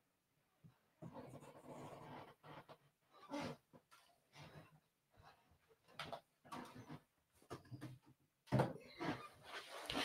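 Faint, scattered soft rustles and breath-like sounds of a person moving about and handling a handheld light wand in a quiet room, a few short bursts with near silence between.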